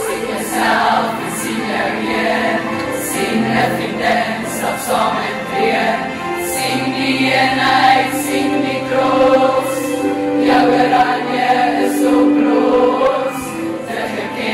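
A large group of teenage schoolgirls singing a song together as a choir, the voices carrying on without a break.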